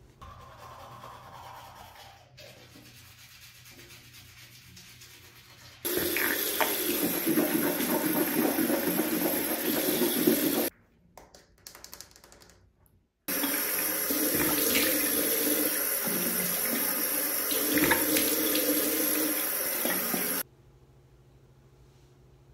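Water running from a bathroom sink tap in two long stretches of several seconds, with a short quiet break between; each starts and stops suddenly.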